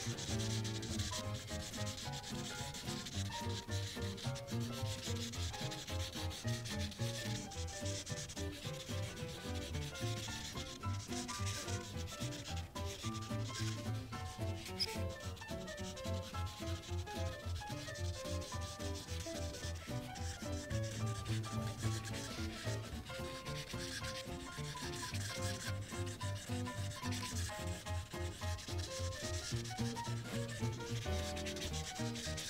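Brush tip of a Prismacolor marker rubbing across paper in quick back-and-forth strokes, filling in a large area of colour; the scratchy rubbing goes on with only brief pauses. Under it runs a quieter pattern of low tones that change step by step.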